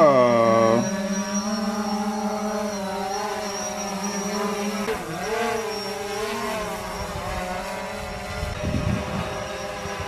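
Quadcopter drone's propellers humming as it lifts off and hovers, the pitch wavering as the motors adjust, with a dip and rise about five seconds in. Wind rumbles on the microphone near the end.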